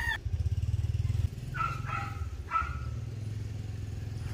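A motorcycle engine running as a low, rapidly pulsing rumble that drops in level about a second in and goes on more quietly. Over it, a chicken gives three short calls.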